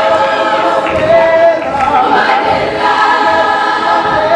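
A school choir singing, several voices holding long notes together.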